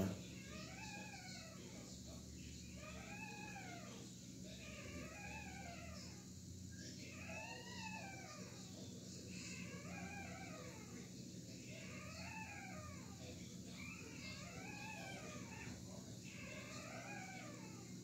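A cat meowing faintly over and over, about one rising-and-falling meow every two seconds.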